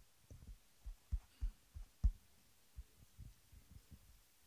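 A string of irregular dull low thumps, about a dozen in four seconds, with the loudest about two seconds in.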